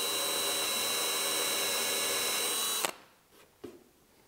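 Cordless drill with a brad-point bit running at a steady speed, boring a shallow starter hole in wood for a square plug. The motor stops abruptly about three seconds in, leaving only a few faint clicks.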